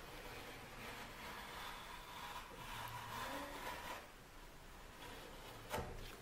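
Green FrogTape painter's tape being peeled slowly off a painted surfboard, a faint tearing noise that stops about four seconds in, followed by a short tick near the end.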